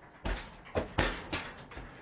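A horse's hooves knocking on the floor of a horse trailer as it steps in, about five separate knocks.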